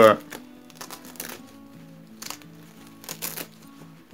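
Plastic zipper on a bee suit's veil hood being worked and tugged by hand, with the cloth rustling, in a few short scratchy bursts. The longest burst comes about three seconds in.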